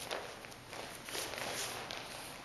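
Bare feet stepping and shuffling on padded training mats, a quick run of soft steps as one partner closes in on the other.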